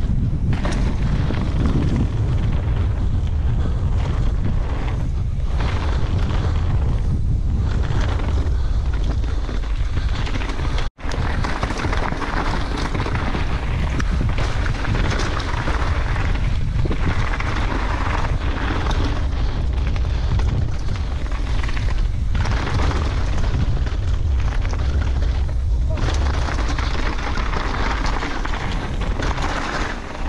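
Wind rumbling over a GoPro action camera's microphone during a mountain-bike descent, mixed with the hiss and clatter of tyres and bike over a rough trail. The sound drops out for an instant about eleven seconds in.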